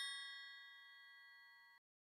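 The ringing tail of a single bell-like ding from a logo sound effect, several clear tones fading away until the last trace cuts off near the end.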